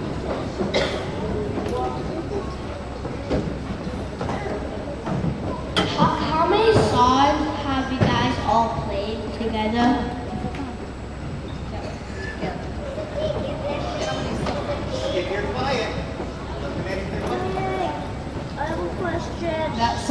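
Indistinct talking in a reverberant school gymnasium: voices away from the microphone, one of them asking a question, with audience murmur behind.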